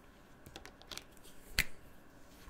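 Plastic felt-tip marker being handled: a few light clicks and taps, the loudest a single sharp click about a second and a half in.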